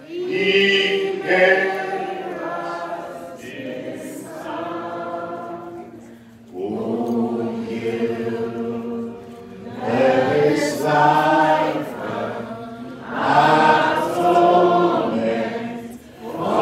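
A group of people singing a Christian worship song together, in long held phrases with short breaks between the lines.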